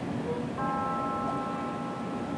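A steady held tone, several pitches sounding together, starts about half a second in and holds, over a constant outdoor hiss.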